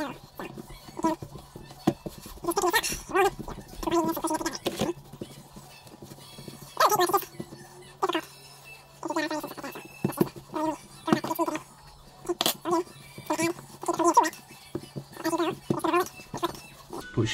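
A fairly high voice sounding in phrases throughout, over a low steady hum, with a few short knocks.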